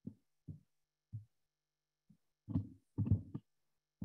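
Muffled low thumps, three about half a second apart. A louder cluster of knocks and rustling comes near the end.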